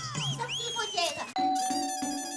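Electronic doorbell chime sounding about a second and a half in, starting suddenly, then holding a steady ringing tone that slowly fades.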